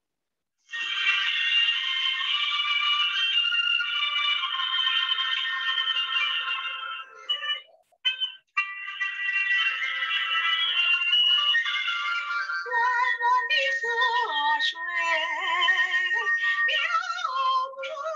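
Karaoke-style backing music heard thin and narrow through an online video call, starting after a moment of silence and briefly cutting out about halfway. A woman's singing voice comes in over it near the end.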